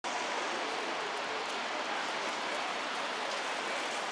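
Steady city street noise: an even hiss of distant traffic with no distinct events.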